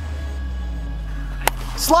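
A plastic wiffle ball bat strikes the ball once with a sharp crack about one and a half seconds in, solid contact that sends it over the fence. A low, steady background music bed runs underneath.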